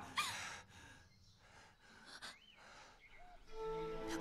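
A woman's faint gasping breaths in a hush, then soft background music with long held notes fades in near the end.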